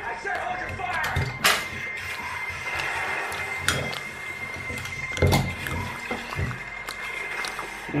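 Television audio of speech and music playing in a small room, with a couple of sharp clicks from a winged corkscrew being worked into a wine bottle.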